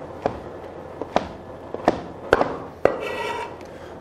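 Chef's knife slicing wild mushrooms on a plastic cutting board: about five sharp knocks of the blade meeting the board, spaced roughly half a second to a second apart.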